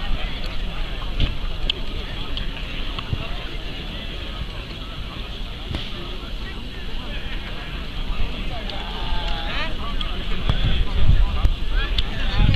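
Indistinct chatter of several voices nearby, with wind rumbling on the microphone that grows toward the end.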